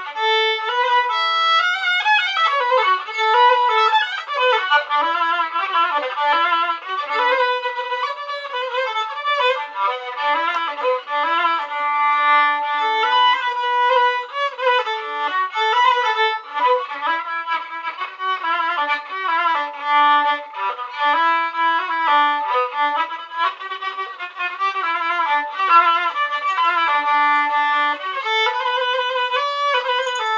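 Background music: a violin playing a continuous melody.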